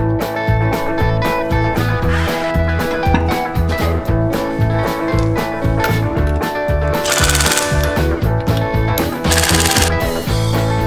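Background music with a steady beat. About seven seconds in and again near the end, a cordless impact wrench rattles in two short bursts, running the lug nuts onto a stock Ford Bronco wheel.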